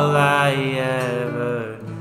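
A man's voice holds one long sung note over acoustic guitar, fading out near the end.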